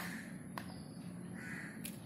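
A short bird call about a second and a half in, over a faint steady hum. A steel spoon clicks lightly against the plastic shaker cup twice as rasam powder is spooned in.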